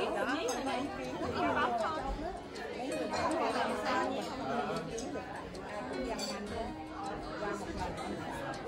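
Several women talking at once, overlapping conversation around a table, with a few light clinks of tableware.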